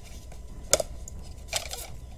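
Cardboard packaging being handled: one sharp tap about a third of the way in, then a few brief rustles near the end.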